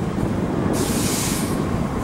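Steady low rumble of street traffic, with a brief hiss of air about a second in.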